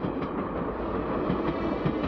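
Passenger train running along the track: a steady noise of wheels on rails with many small irregular clacks.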